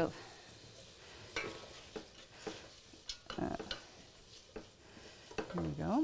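Wooden spoon stirring sautéing vegetables in a stainless steel stock pot: soft sizzling with scattered scrapes and clicks of the spoon against the pot.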